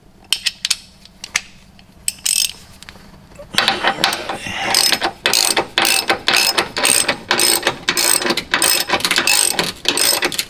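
Hand socket ratchet driving a bolt up through a tie-down bracket and jacking rail into a car's chassis. A few separate clicks come first, then from about a third of the way in, repeated strokes of rapid ratchet clicking as the bolt is run up and draws the bracket and rail against the underside.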